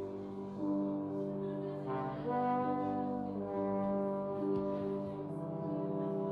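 Valve trombone playing slow, held notes that change pitch every second or so, layered over sustained electronically generated tones.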